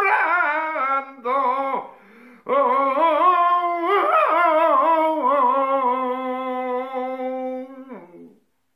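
Unaccompanied male voice singing the drawn-out closing melisma of a flamenco fandango. Wavering ornamented phrases come first, then a short break about two seconds in, then one long held note that sinks slowly in pitch and stops just at the end.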